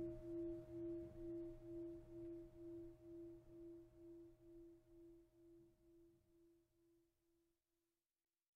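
A Buddhist bowl bell ringing out: a single tone that wavers about twice a second and fades away, dying out just before the end.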